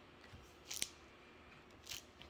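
Near silence with two brief, faint hissy mouth noises about a second apart, made by a man pausing between sentences just before he speaks again.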